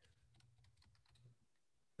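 Near silence, with faint, irregular clicks scattered through it.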